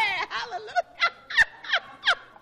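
A woman laughing hard in a run of short, high squeals, each falling sharply in pitch, coming two or three times a second from about a second in.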